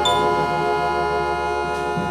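Jazz quintet holding a long sustained chord at the close of the tune, with the instruments ringing together at a steady level.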